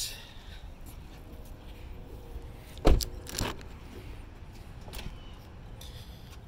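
Doors of a 2016 Toyota Camry being worked: one loud thump about three seconds in, as a door is shut, then a smaller click of a door latch half a second later, over light handling rattle.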